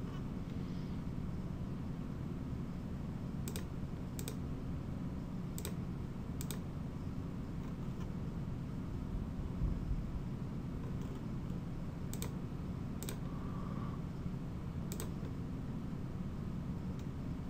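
Computer mouse clicking, about seven sharp clicks, mostly in pairs under a second apart, as points are placed with the Line tool. A steady low hum runs underneath.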